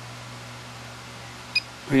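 Steady low electrical hum, then about one and a half seconds in a single short, high beep from the Graupner MX-20 transmitter as a key on its control pad is pressed.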